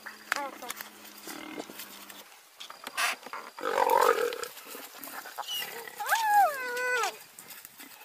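Spotted hyenas and a leopard in a scuffle. Several high yelping calls rise and fall in pitch, the loudest a drawn-out double call about six seconds in, and a harsh snarl comes around four seconds in.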